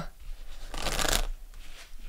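A deck of tarot cards being shuffled by hand to draw a card, a papery rustle that is loudest for about half a second in the middle.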